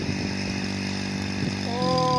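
Motorcycle engine running at steady revs while its rear wheel spins in a muddy puddle, throwing up water spray. A voice comes in near the end.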